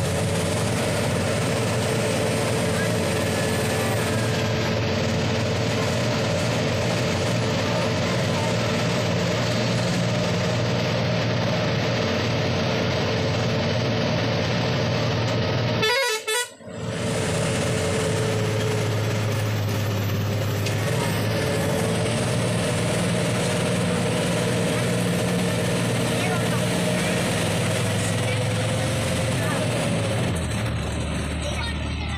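Bus engine and road noise from inside the moving bus, steady, with a constant whine running over it. The sound drops out briefly about halfway through.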